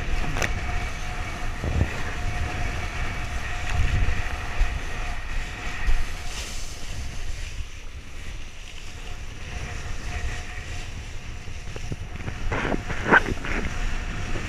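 Wind buffeting an action camera's microphone as a kiteboard planes over choppy sea, with the rush of water and spray under the board and occasional sharp slaps of chop against it.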